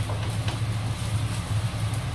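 A steady low kitchen hum under stir-frying, with a faint knock of a spatula in a wok about half a second in.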